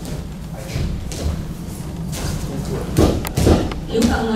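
Thuds from a martial artist working through a chair form on a padded mat, with lighter knocks early on and two heavy thuds about three seconds in, half a second apart.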